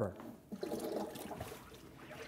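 Faint water washing in a wave tank as small generated waves run up into a model harbor.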